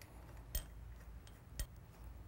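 Two faint metallic clicks about a second apart, with a few fainter ticks, as a steel clamp bolt is handled and threaded into the yoke of a Clampseal globe valve.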